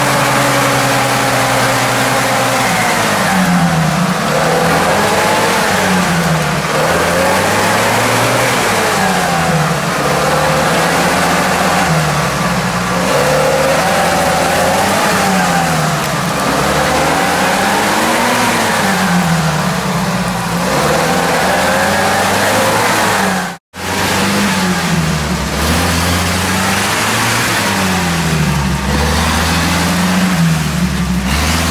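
UAZ-469 off-road vehicle's engine revved up and down over and over, a swell about every two seconds, as it pushes through deep mud ruts. The sound cuts out for a moment about two-thirds of the way through.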